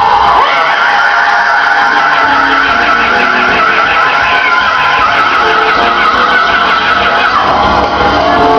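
Gospel choir praise-break music: one long high note, wavering slightly, held for about seven seconds and breaking off shortly before the end.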